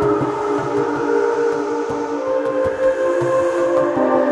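Ambient electronic music: sustained, slowly shifting synth pads in layered tones, with faint regular ticks and soft low pulses underneath.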